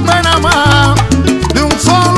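Salsa band playing an instrumental passage: a repeating bass line under gliding melodic lines, with percussion keeping the rhythm and no singing.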